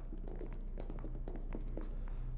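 A low steady hum with a few faint ticks and taps scattered through it.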